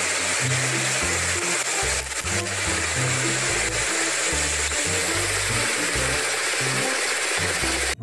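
Steady noise of a railway rotary snowplow blasting snow aside, with music carrying a stepping bass line over it. Both cut off abruptly near the end.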